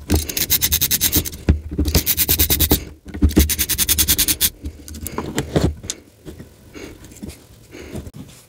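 Ratcheting hex screwdriver clicking in three quick runs while backing out the drone frame's top-plate screws. After that come lighter scattered clicks and knocks as the carbon-fibre top plate and parts are handled.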